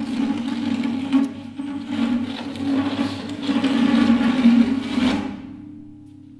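Acoustic guitar played with an extended technique: a dense rough rubbing and scraping noise over a steady low string drone. It starts suddenly, grows louder towards the end, then dies away about five seconds in, leaving the low string tone ringing.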